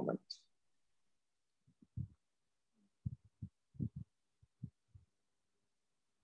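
Faint, dull low thumps, about a dozen in irregular clusters, starting about two seconds in and dying away near the end.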